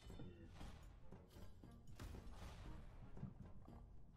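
Faint audio from the Evil Goblins xBomb online slot: the game's background music with short clicking hits as the reels cascade and the grid expands, and a brief rushing effect about two seconds in.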